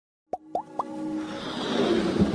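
Electronic intro sting for an animated logo: three quick rising blips about a quarter second apart, then a whooshing swell building up.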